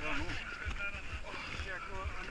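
Shallow muddy water sloshing and lapping as a person wades through it and works a wooden board frame, with faint voices behind.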